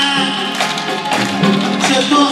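Live amplified band music with sustained pitched instrument tones and sharp percussive taps.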